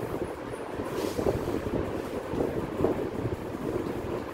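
Steady low rumbling noise, like moving air buffeting the microphone.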